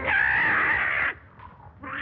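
A loud, shrill, pitched cry lasting about a second, one of a series of such cries repeating every second or two.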